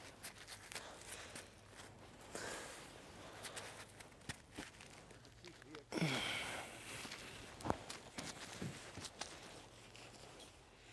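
Faint crunching of snow packed into a glass jar by gloved hands, with audible breaths. About six seconds in the sound jumps louder, with a short falling breath sound followed by a few sharp clicks.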